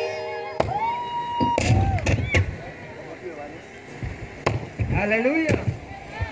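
Amplified keyboard music dies away, leaving a single held note for about a second. Then come a few sharp knocks and short snatches of voice over a loudspeaker system.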